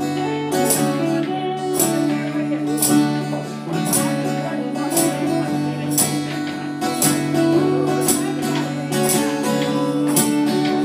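Live acoustic folk band playing an instrumental passage: strummed acoustic guitars holding chords over a steady beat.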